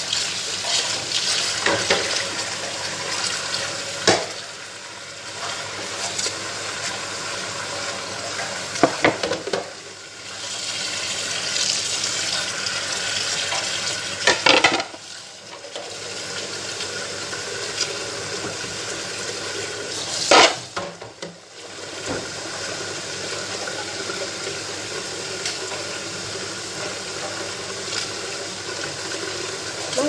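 Tap water running into a kitchen sink while ceramic plates are washed, with several sharp clinks of dishes knocking together. The water sound drops away briefly three times.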